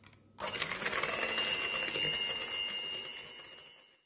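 Electric hand mixer switched on about half a second in, its beaters whirring through egg yolks and sugar in a plastic bowl with a steady high whine, then dying away near the end.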